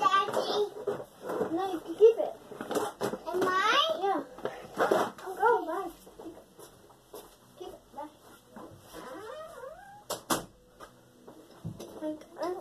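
A child's voice talking indistinctly, with a sharp knock about ten seconds in.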